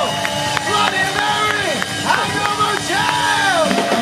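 Live rock band playing, with acoustic guitar and drums, and a melody line that swoops up and down in pitch over the top.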